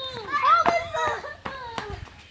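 Children's voices exclaiming excitedly, with a few sharp clicks in the second half.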